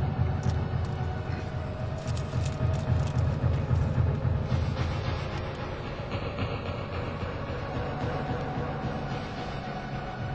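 A steady low rumble inside a car cabin. Over it, the crackle of a paper food wrapper and chewing come in the first few seconds and fade out about halfway through.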